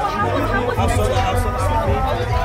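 Several people talking over one another, with loud music with a heavy bass line playing behind them.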